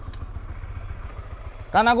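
Honda CB150X's single-cylinder engine idling with a steady, rapid low pulse, running smoothly.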